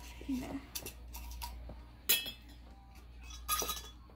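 Glass jar of cotton swabs being handled, giving a few sharp clinks and knocks: the loudest about two seconds in and another short cluster near the end.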